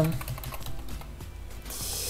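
Computer keyboard keys clicking in a quick run of presses as a short word is typed.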